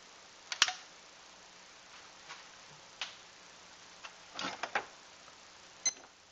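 A few scattered sharp clicks and taps from hands at work lighting a soda-can alcohol stove: one loud click about half a second in, another about halfway, a short cluster of taps near the end, and a last click as the digital timer is started.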